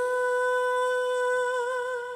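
A woman singing one long held note into a microphone, steady at first, with a slight vibrato coming in near the end.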